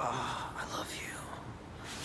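A faint, breathy whispering voice.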